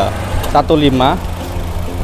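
Honda Mobilio's 1.5-litre i-VTEC four-cylinder petrol engine idling steadily with the bonnet open, a smooth, even hum.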